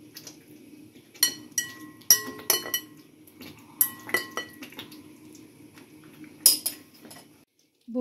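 Sharp clinks and knocks of a utensil against a glass mixing bowl and a frying pan as raw chicken pieces are moved into the pan. Several come clustered in the first half, with one more near the end, over a low steady hum.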